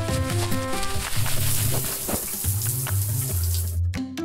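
Background music with a bass line. From about a second in, a hand shower's spray of running water hisses over it, then cuts off suddenly just before the end.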